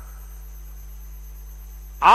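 Steady low electrical hum.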